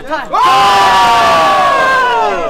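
Poker spectators at the rail yelling during an all-in, led by one long, loud shout that starts about a third of a second in and slides slowly down in pitch, over general crowd noise.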